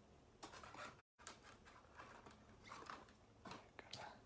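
Near silence with faint rustling and sliding of trading cards being handled in short bursts, broken by a brief cut to dead silence about a second in.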